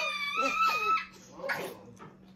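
A young girl's high-pitched squealing laughter, held for about a second and then dying away, with a short breathy burst of laughter near the end.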